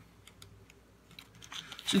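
Faint, scattered light clicks and ticks of a small round button pin being handled and turned over in the fingers, with paper under the hands. A man's voice starts near the end.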